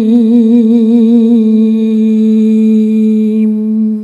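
A woman's voice holding one long, unbroken note in melodic (mujawwad-style) Quran recitation, wavering with vibrato at first, then steadying and fading out near the end.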